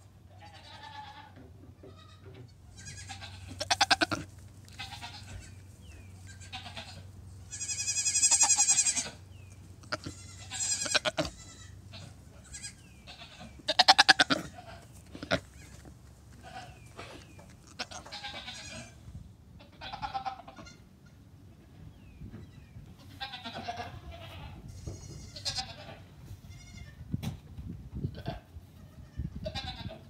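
Goat kids bleating again and again in high, wavering calls, mostly short, with one longer call about eight seconds in; the loudest come around four, eight and fourteen seconds.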